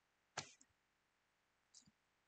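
Near silence, broken by one short click about half a second in and a fainter tick near the end.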